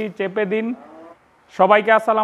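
A man speaking to the camera, with a short pause about a second in.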